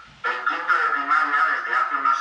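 A man's voice talking over a video call, played back through a laptop speaker, with most of its sound in the middle range and little bass.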